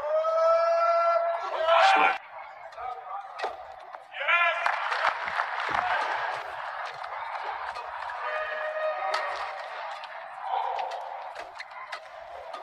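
Badminton rally: short sharp racket strikes on the shuttlecock, over voices from the arena crowd. A long held shout fills the first two seconds.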